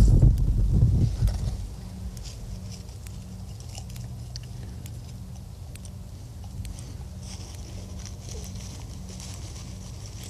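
Faint rustling and small clicks of hands working in dry corn stalks and loose dirt while placing a lure stick at a dirt-hole trap set, over a steady low hum. A loud low rumble, like wind on the microphone, fills the first second and a half.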